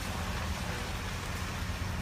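Steady low hum of an idling vehicle engine, with an even hiss over it.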